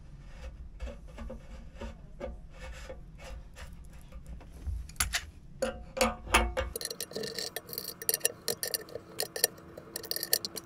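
PTFE-taped plastic pipe fittings being screwed into the threaded ports of a sea chest, the taped threads rubbing and scraping, with scattered clicks and knocks. A few louder knocks come about five to six and a half seconds in. After that comes a run of quick clicks and scraping as a wrench snugs a fitting down.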